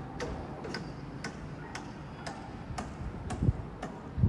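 Sharp clicks repeating steadily about twice a second, like a ticking, over a low outdoor rumble, with a few heavier low thumps near the end.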